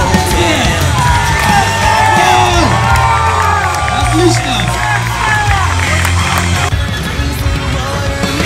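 Loud rock music with a heavy bass, and a crowd cheering, whooping and shouting over it.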